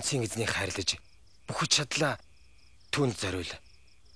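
Crickets chirping in a steady, evenly pulsed high trill behind a man's voice speaking in three short phrases.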